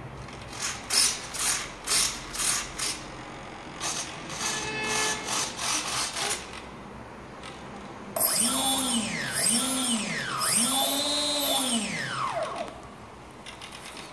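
Small brushless outrunner motor, a 2822 1400 KV, spinning with no propeller: its whine rises in pitch and falls back three times, the last run the longest. Before it, a string of short mechanical clicks and buzzes.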